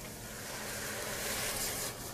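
Vegetable broth being poured into a pot of sautéed vegetables: a steady hiss that slowly grows louder.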